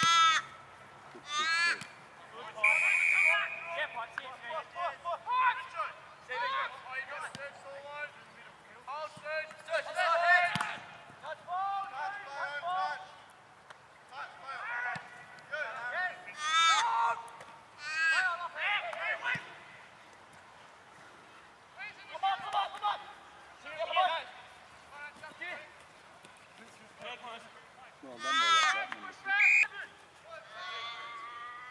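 Shouts and calls from footballers on an Australian rules football field, short raised voices coming one after another with brief quieter gaps.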